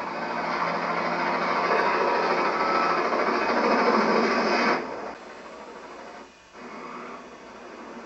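Film soundtrack playing from a television: a dense noise that grows louder, then stops abruptly about five seconds in, leaving a quieter steady background.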